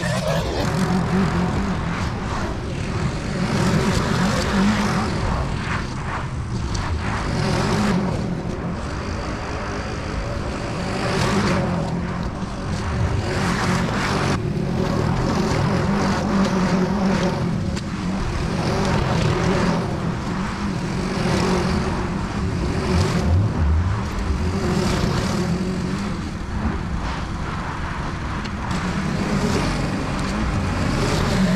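Small motors of lawn gear running steadily: a string trimmer, then a walk-behind lawn mower. The level swells and eases every few seconds as the cutting goes on.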